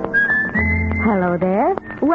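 Old-time radio theme music: a whistled melody over plucked guitar, with a low bass note coming in about half a second in. Near the end a voice swoops down and back up in pitch.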